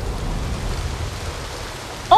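Steady rush of a waterfall, water pouring and crashing.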